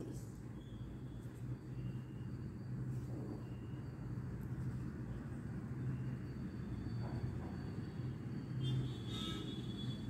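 Steady low background rumble and hum, with a few faint, short high tones, most of them near the end.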